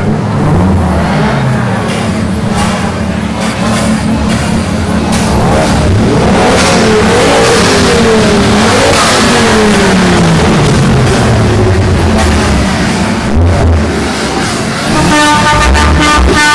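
Car engines revving and accelerating away, the engine note rising and falling several times, most clearly in the middle.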